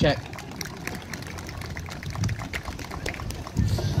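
Light, scattered applause from a small outdoor audience: a patter of irregular hand claps.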